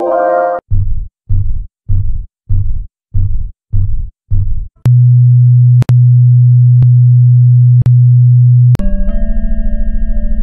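Synthesized computer startup sounds. A short electronic chime is followed by eight short low buzzing beeps about two a second, then a loud steady low hum broken by a few sharp clicks. Near the end a sustained electronic chord swells in over a pulsing low drone.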